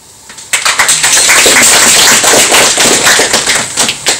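Audience applauding, starting sharply about half a second in and dying down near the end.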